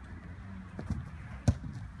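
A futsal ball struck on an artificial-turf pitch: a sharp thud about a second and a half in, with a fainter knock a little earlier.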